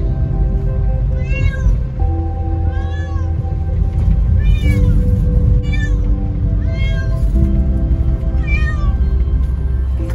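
A six-month-old kitten meowing six times, roughly every one to two seconds, each call rising and then falling in pitch. Background music with a steady bass runs underneath.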